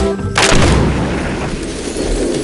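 A sudden loud boom about half a second in as a burst of confetti is blown into the sky, cutting across the music, followed by a rushing noise that fades over about a second.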